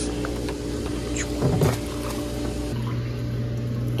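Steady low hum of an above-ground pool's filter pump, with faint water noise; the hum grows louder about three seconds in.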